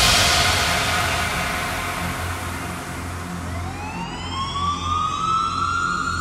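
Breakdown of a Melbourne bounce electronic dance track: a fading noise sweep over low bass notes, then, about three and a half seconds in, a siren-like synth tone rises and levels off as a build-up riser.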